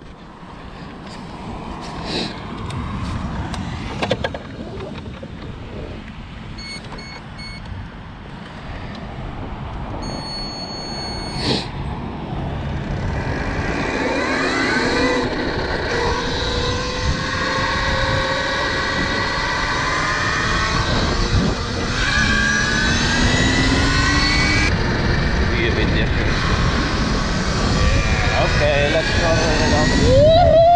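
Electric motor of a KTM Freeride E-XC enduro bike whining as the bike pulls away and gathers speed; from about halfway the whine sweeps up in pitch several times. Wind and road noise grow louder as the speed rises.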